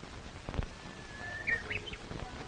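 A songbird calling: one long whistled note, then a quick rising flourish near the end. A sharp click comes about half a second in, over the hiss of an old soundtrack.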